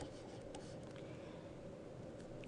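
Faint, steady hiss of room tone in a small room, with no distinct events.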